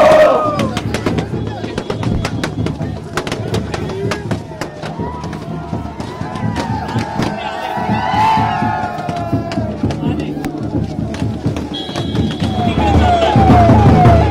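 Strings of firecrackers going off in rapid sharp cracks amid a shouting, cheering crowd, over drumming and music. Near the end a police vehicle siren starts, a rapidly repeating rising wail.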